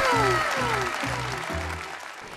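Applause from the studio panel over a short music sting. The sting has a few falling tones and a pulsing bass beat, and everything fades out over the two seconds.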